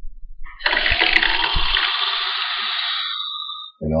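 Red-hot copper pipe, blackened in a propane torch flame, sizzling as it is plunged into borax solution to quench it. The hiss starts suddenly about half a second in and dies away just before the end.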